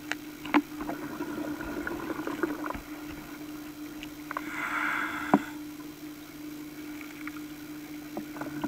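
Underwater sound picked up by a diver's camera: a steady low hum, two sharp clicks (about half a second in and again past five seconds), and a short hiss just before the second click.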